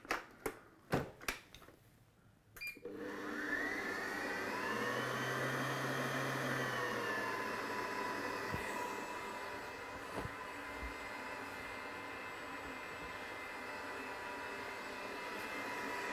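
Kenwood Titanium Chef Patissier XL stand mixer: a few clicks and knocks as its tilting head is brought down, then the motor starts about three seconds in with a whine that rises as it spins up and settles into a steady run, turning the dough hook through dry flour, yeast, sugar and salt.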